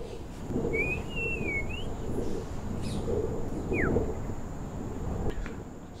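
A low, gently pulsing rumbling drone with a faint high steady whine, over which a bird chirps twice: a wavering whistled call about a second in and a short falling chirp near four seconds.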